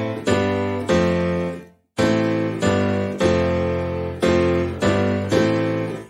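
Sampled grand piano in Kontakt, tone set to hard, playing a rhythmic dance-piano chord riff: repeated chord stabs, each ringing and fading, with a short break just before two seconds in. The hard tone setting is meant to give it a brighter dance-piano character.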